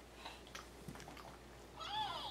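A few faint soft knocks, then near the end a louder high-pitched voice that rises and falls in an arching call.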